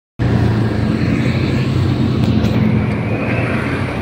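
A motorcycle's engine running steadily while riding in traffic, heard from on board, with a constant low hum and road noise. It starts abruptly just after the beginning.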